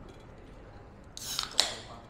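A short rasping scrape about a second in, followed by a sharp click that rings briefly.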